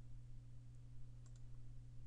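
A few faint clicks of a computer mouse scroll wheel: one a little under a second in, then a quick cluster around a second and a quarter. They sit over a low, steady electrical hum.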